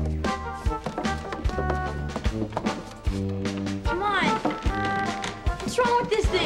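Background music with a steady beat under sustained chords.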